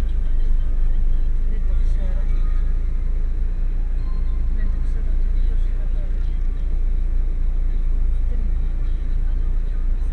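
Steady low rumble of a vehicle moving slowly along a dirt track, heard from inside the cab.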